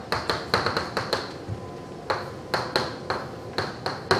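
Chalk writing on a blackboard: an irregular run of sharp taps and short scratches as symbols are written, with a brief pause near the middle.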